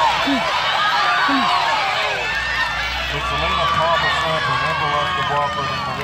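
Spectators yelling and cheering runners on during a women's 400 m race, many voices overlapping. One low voice calls out about once a second at the start.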